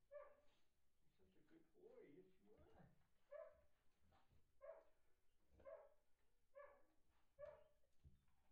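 A dog whining in short, high cries, faint, about six of them, most roughly a second apart.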